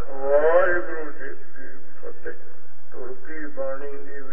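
A man's voice speaking, opening with one long gliding syllable.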